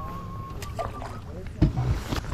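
Two knocks on a fishing boat near the end, over a steady low rumble, with a thin whistle-like tone at the start.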